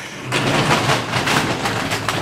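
Small wheels under an old furnace cabinet rolling across a concrete floor, a rough, steady rolling noise with a low hum under it, setting in a moment after the start.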